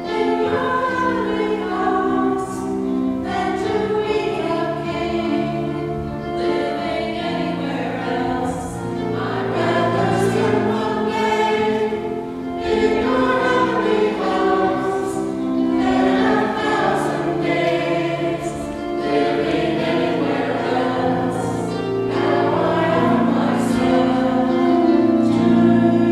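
A church choir singing a sacred anthem in several voice parts, with sustained, overlapping notes that change every second or two and no breaks.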